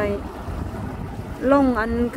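Low, uneven rumble of a boat under way on a river, with wind buffeting the microphone.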